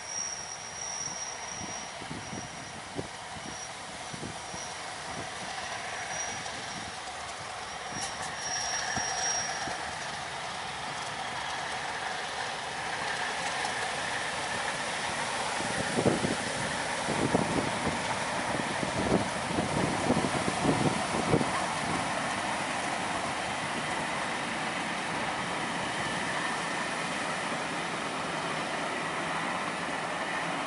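Heritage diesel locomotive hauling a passenger train past, the rumble of engine and train growing louder as it approaches. A thin, high-pitched squeal is heard through the first ten seconds. Around the middle comes a quick run of knocks as the wheels pass over rail joints, then the coaches rumble steadily on past.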